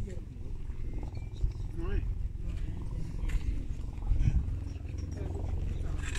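People's voices over a steady low rumble.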